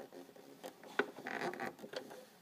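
Fingers and thread rubbing and clicking against the thread guide beside the needle of a Singer sewing machine while it is being threaded: light scratchy rustling with small ticks and one sharper click about a second in.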